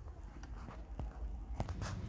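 A few faint clicks over a low, steady background rumble.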